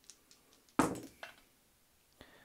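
Dice rolled onto a wargaming table: one sharp clack a little under a second in, followed by a few lighter ticks as the dice settle.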